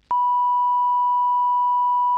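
Steady 1 kHz line-up test tone, a pure beep that switches on a fraction of a second in and holds unbroken at one pitch. It is the test signal that a committee room's sound feed carries, in turn with a spoken channel ident, when the live meeting audio is not being sent.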